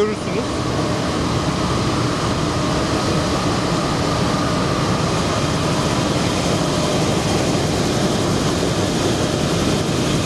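Carbon brushing (peach-skin finishing) machine running, fabric passing over its brush rollers: a steady mechanical noise with a few faint steady tones in it.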